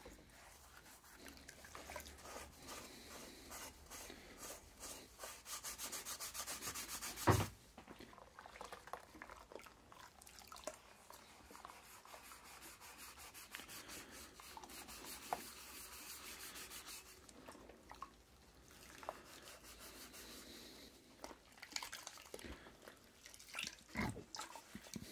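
Scouring sponge scrubbing brass blowtorch parts in soapy water: a rubbing, rasping sound in spells, with a run of fast back-and-forth strokes ending in a sharp knock about seven seconds in.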